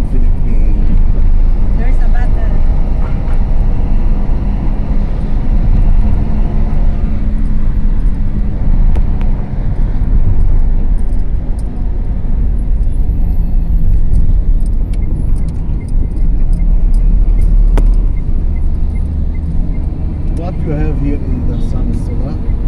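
Road noise inside a moving car: a steady, loud low rumble of engine and tyres on the road.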